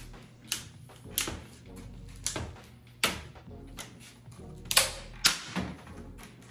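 Plastic mounting flange of a replacement window being bent and snapped off along a scored line: a string of sharp snaps and cracks, about six spread over a few seconds.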